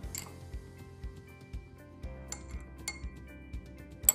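Soft background music with a steady beat. Over it, a metal spoon clinks a few times against a glass cup as honey is stirred into the tea.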